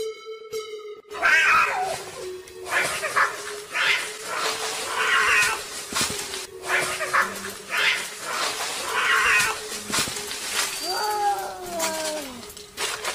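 A domestic cat yowling in a string of harsh cries, about one every second and a half, ending in a falling meow near the end, over background music.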